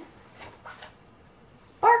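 Faint rustle of a large picture-book page being turned, then near the end a woman's voice suddenly and loudly calls out "Bark".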